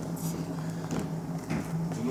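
A paper packet of powdered cookie dough mix rustling as it is handled and a small spoon scoops from it, with a few faint scratchy sounds over a steady low hum.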